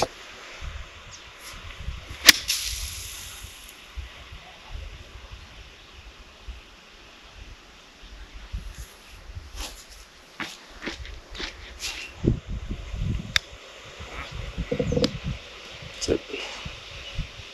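A golf club striking a golf ball on a short shot: one sharp click about two seconds in. A few fainter clicks and some low rumbling follow later.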